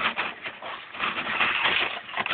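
A poster-board thrust tube rubbing and scraping against the foam airframe as it is pushed into the fuselage by hand, in irregular rustling bursts.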